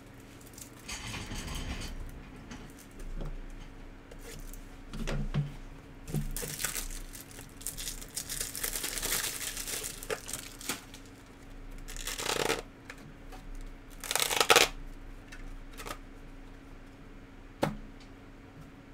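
A trading card pack's foil wrapper being torn open and crumpled, in a run of rustling, tearing bursts as the cards are handled. The loudest burst comes about two-thirds of the way through, and there is one sharp click near the end.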